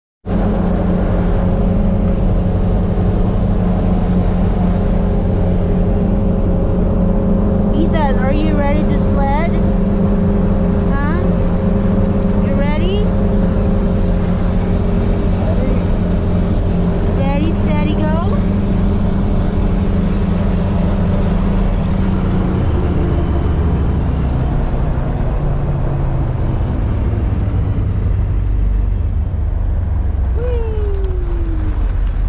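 Utility vehicle engine and drivetrain droning steadily, heard from inside the cab, dropping in pitch after about 22 seconds as it slows. A few brief high squeals come through over it in the first twenty seconds.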